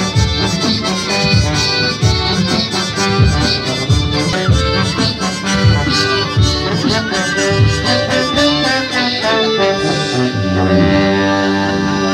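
Live street band of brass and other wind instruments playing a tune over a steady low drum beat; about ten seconds in the beat drops out, leaving held chords.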